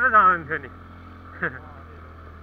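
TVS NTorq 125 scooter's single-cylinder engine running steadily at low road speed, a steady low drone with a hum, under a man's voice in the first half second.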